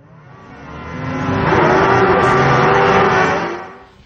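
A racing engine revving, swelling up from silence to a loud peak about two seconds in and fading away again near the end.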